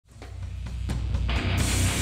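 Live heavy rock band music fading in from silence: a heavy bass and drum hits at first, then guitars fill out the sound, which grows brighter and louder just after the middle.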